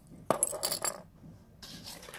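A sharp click about a third of a second in, then a brief run of light metallic clinks and jingles lasting about half a second, like small metal objects being handled.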